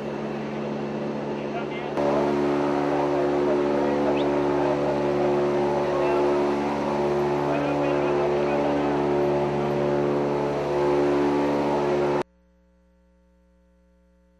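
Loud, steady engine drone inside a military aircraft cabin, running with several steady tones layered together. It cuts off suddenly near the end, leaving near silence.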